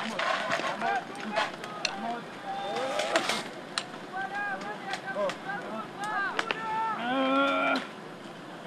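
Several men shouting and calling out over one another, with scattered sharp clicks and knocks; one loud, held shout comes near the end.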